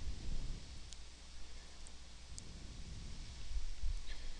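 Quiet room tone: a steady low hum with faint background noise, and three or four faint, short clicks in the middle.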